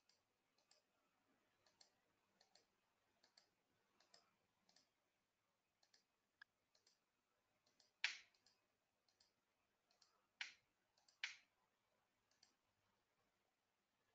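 Computer mouse clicking over near silence: a scatter of faint, separate clicks, with three louder clicks in the second half.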